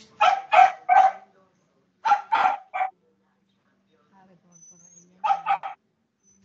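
A dog barking in three quick runs: three barks, then three more, then a rapid four.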